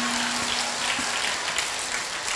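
Audience applauding with a steady patter of clapping, while the tail of a man's held chanted note fades out at the start.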